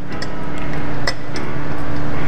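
Background music with steady held tones, swelling slightly, and a few light metallic clicks near the start and about a second in, from an Allen wrench turning steel bolts into an aluminum scooter deck.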